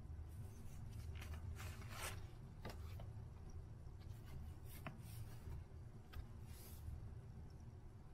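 Photo prints being handled and swapped by hand: faint papery rustles and slides, in clusters about a second or two in and again around five to seven seconds in.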